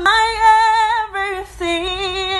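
A woman singing a gospel worship song unaccompanied, holding a long note for about a second, then after a short breath a second, slightly lower held note.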